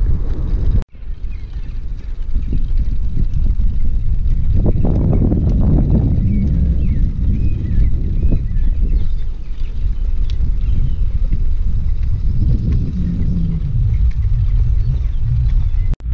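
Loud wind buffeting the microphone of a camera carried on a moving bicycle, a dense low rumble with the rush of riding along the road. It drops out abruptly for a split second about a second in.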